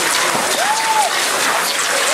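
A pack of cross-country skiers classic-striding past close by: a dense clatter of many skis gliding and ski poles planting and scraping on packed snow. A single call rises and falls about halfway through.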